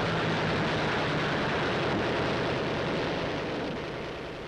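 Propeller aircraft engine drone with a rushing noise, steady and easing off slightly near the end.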